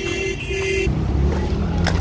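A vehicle horn honks twice in quick succession, each a short steady blast, over the low steady rumble of car engines running in a parking lot.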